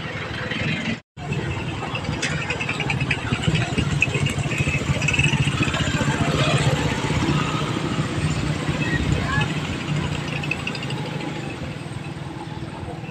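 Motorcycle engine running steadily while riding down a street, with road and street noise around it. The sound cuts out completely for a moment about a second in.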